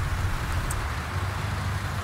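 Steady hiss of road traffic with a low, constant hum beneath it.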